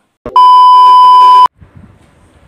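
Loud, steady electronic beep tone about a second long, high and pure, starting just after a click and cutting off suddenly.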